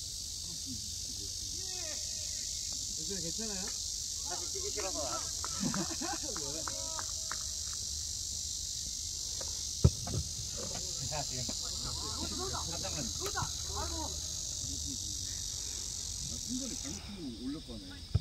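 Steady high-pitched buzz of a cicada chorus, which drops away sharply near the end. Scattered distant shouts of players, and one sharp thud of a football being kicked near the middle, the loudest moment.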